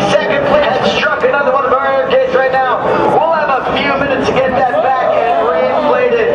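Speech: people talking, a man's voice among them.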